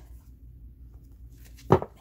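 A single short thump about three-quarters of the way through, as a tarot card is set down on the table, over quiet room tone with a low hum.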